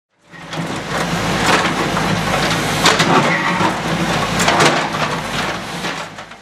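Backhoe loader's diesel engine running with a steady low rumble as its rear bucket digs into loose concrete paving blocks, with several sharp clacks of the blocks knocking together.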